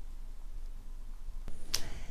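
Quiet room tone, then a faint click about one and a half seconds in, followed at once by a short, sharp snap-like burst.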